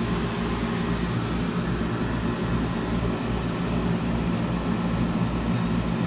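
Rabbit CO2 laser engraver running an engraving job: a steady machine hum with a regular low pulsing as the laser head works back and forth over the strip.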